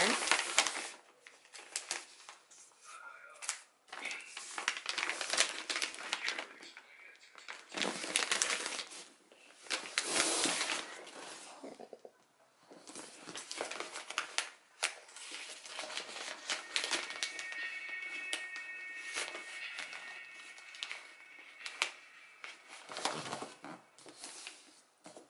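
Sheets of wrapping paper being folded, creased and smoothed by hand around a box, crinkling and rustling in irregular bursts.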